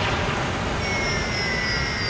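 Synthetic whoosh sound effect of an animated logo reveal: a steady rushing-air noise, joined about a second in by thin high tones that glide slowly downward.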